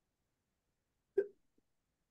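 One short vocal sound, a clipped grunt or hiccup-like catch of breath, a little over a second in, otherwise dead silence on the call.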